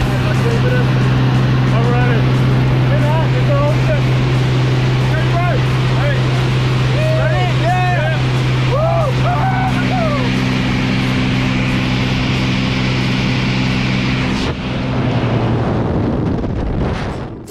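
Single-engine jump plane's engine and propeller droning steadily inside the cabin, with voices shouting over the noise. Near the end the sound changes as the door is open and wind rushes in.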